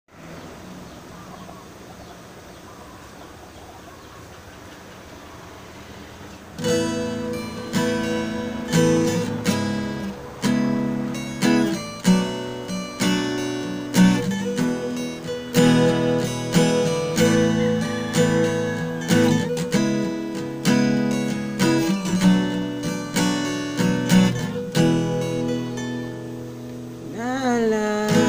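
Steel-string acoustic guitar strumming chords in a steady rhythm, each strum ringing out. For the first six and a half seconds there is only a faint steady hiss before the strumming starts.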